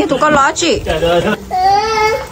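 People's voices talking, with a higher-pitched, drawn-out voice in the second half.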